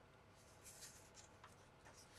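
Faint rustling of a paper instruction booklet as its pages are handled and turned: a few short, soft rustles, the longest about a second in.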